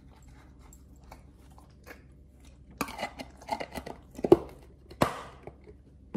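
A pit bull eating from a small plastic cup held to its muzzle. Faint licks come first, then a burst of loud, irregular chewing and crunching in the second half, with a sharp click about five seconds in.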